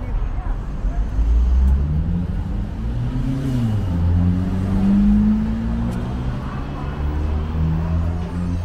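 A car engine accelerating along the street close by, its pitch rising, dipping about halfway through, then rising again, over a low hum of traffic.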